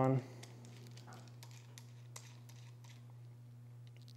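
A few faint, scattered small metal clicks as an extension anvil is threaded onto a dial bore gauge, over a steady low hum.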